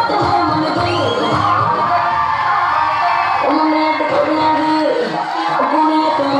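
Loud song music with a singing voice.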